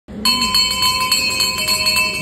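A metal bell rung rapidly and repeatedly, several clear high ringing tones renewed about five times a second.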